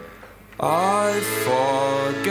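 Music: accordion notes fade into a brief lull, then about half a second in a male voice enters singing the words "I forget", its pitch sliding up, over held accordion chords.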